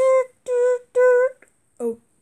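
A voice humming three short, even notes on one pitch, about half a second apart, followed near the end by a brief spoken "oh".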